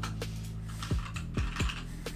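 Computer keyboard typing, a quick run of key clicks, over lo-fi background music with a steady kick-drum beat.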